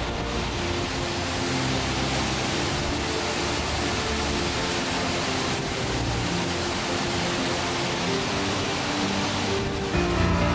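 Steady roar of the Burkhan-Bulak waterfall, a tall mountain cascade, with background music of long held notes alongside it.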